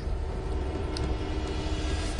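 Steady low machine rumble of construction-site equipment, with a faint steady hum and one small tick about a second in.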